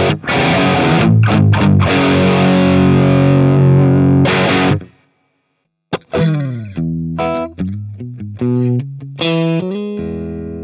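Electric guitar played through a Synergy IICP preamp module, a copy of the Mesa/Boogie Mark IIC+ amp: a heavily distorted chugging riff with short breaks, which cuts off abruptly about five seconds in. After a second of silence comes a lighter, less distorted tone, with single notes ringing out one after another.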